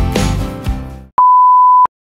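Background music fades out over the first second, then a steady single-pitched television test-tone beep sounds for about two-thirds of a second and cuts off abruptly: the tone that goes with colour bars.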